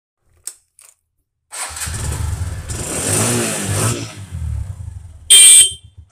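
TVS motorcycle: two small clicks of the key in the ignition, then the engine starts about a second and a half in and runs, revving up once and settling back. A brief, very loud beep a little after five seconds in is the loudest sound.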